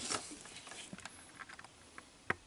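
Faint handling noise of a component tester's test leads being unclipped and moved: a brief rustle right at the start, then a few scattered light clicks.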